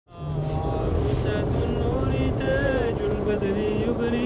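Wordless vocal music: several layered voices hold long notes that waver and bend slowly, over a low rumble.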